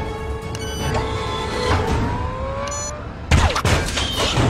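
Action-film soundtrack: music score with sustained, slowly rising tones over a low rumble, then a sudden loud hit a little past three seconds in, followed by a second hit.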